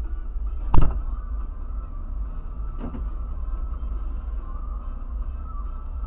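Low steady rumble of a stationary car heard from inside its cabin, with one sharp loud bang about a second in and a fainter knock about three seconds in.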